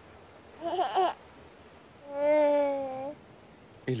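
A baby's voice: a short babble about half a second in, then a long held coo from about two seconds in lasting about a second, gently falling in pitch, over faint birdsong chirps.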